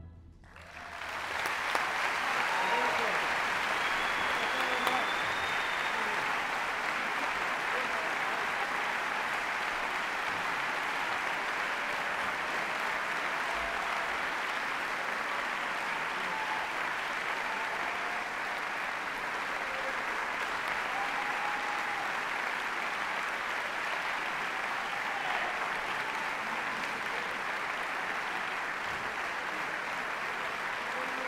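Large concert-hall audience applauding at the end of an orchestral piece. The last orchestral chord dies away right at the start, and the applause swells within about two seconds and then holds steady.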